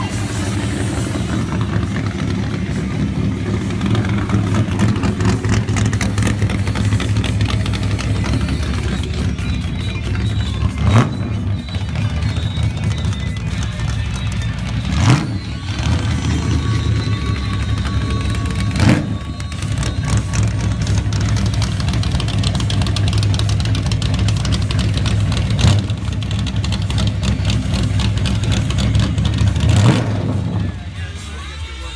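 Carbureted V8 drag-car engine idling loudly with a lumpy, pulsing beat. The throttle is blipped four times, each rev rising and falling quickly.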